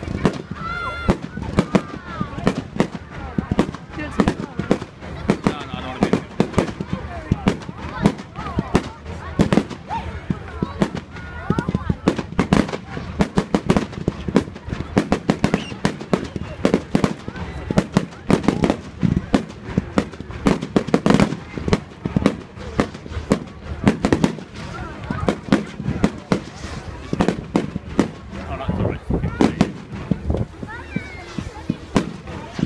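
A fireworks display: a rapid, continuous run of bangs and crackles from aerial shells bursting, several a second.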